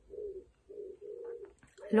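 A pigeon cooing, three low coos in a row.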